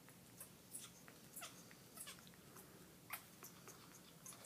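African grey parrot making faint, short squeaks and clicks, a few of them sliding down in pitch.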